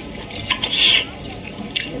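Close-up eating sounds: food picked from a plate by hand and chewed, with a few short clicks and one brief rustling burst just under a second in.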